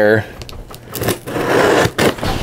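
Cardboard shipping box being torn open: a rasping scrape of packing tape and cardboard, starting about a second in and lasting most of a second.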